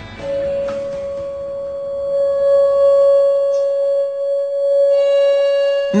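A pure 562 Hz tone played loud through a speaker, tuned to the lead crystal wine glass's fundamental resonance. It starts just after the beginning and holds steady, with fainter higher tones joining after about two seconds. The glass does not break.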